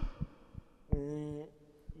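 Several soft low thumps of a handheld microphone being handled, then about a second in a man's short held 'mmm' hum of hesitation into the microphone.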